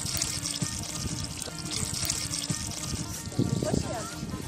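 Water pouring steadily from a pipe spout among rocks and splashing onto the stones below, a continuous trickling rush, with faint music underneath.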